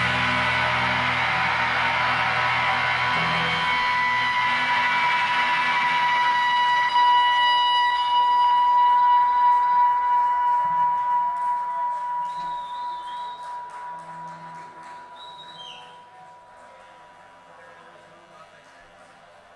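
Electric guitars left ringing through their amplifiers after the drums stop, a sustained feedback drone of several steady high tones that slowly fades away over the last several seconds. A couple of short, faint whistles rise above it near the end.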